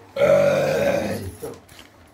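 A person retching loudly from the throat: one long, strained heave of about a second, then a short second one. It comes as helpers urge the patient to bring up what is in his stomach.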